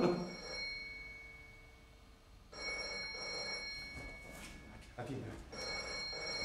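Telephone ringing: one ring about halfway through that fades out, then a second ring starting near the end, signalling an incoming call that is then answered.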